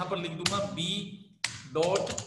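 A man speaking Hindi, with a couple of sharp computer keyboard keystroke clicks as a file name is typed.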